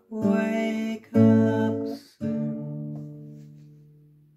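Classical guitar strummed: three chords, the first two cut short, the last left ringing and slowly fading away.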